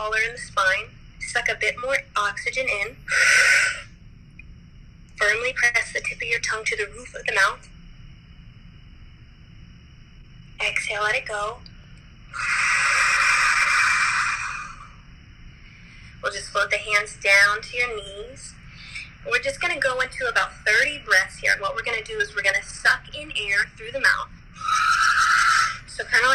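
A woman's voice talking a group through a breathing exercise, broken three times by a loud breath into the microphone: a short one a few seconds in, a long one of about two seconds in the middle, and another near the end.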